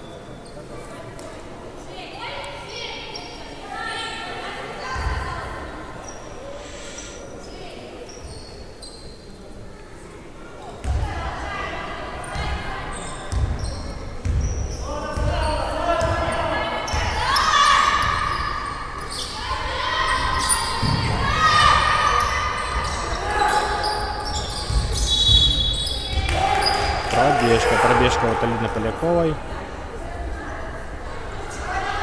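A basketball bouncing on a sports-hall floor during live play, with players and coaches shouting on court; the voices and bounces ring in the big gym. It is quieter at first and livelier from about ten seconds in.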